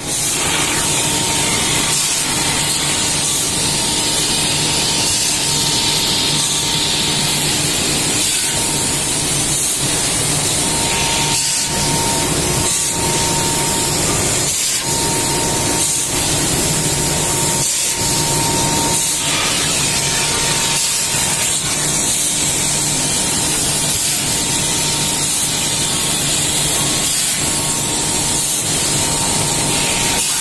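Machinery running steadily with a loud hiss, a constant whine and a low hum, broken by a few brief dips.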